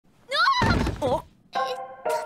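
Anime soundtrack: a character's rising cry, then a dull thud with a short exclamation over it, followed by a held musical chord starting about a second and a half in.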